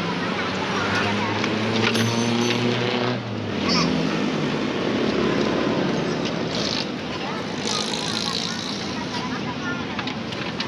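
A motor vehicle's engine runs steadily for about the first three seconds, then stops, under voices talking and occasional metal clanks as parts are pulled from the wrecked truck cab.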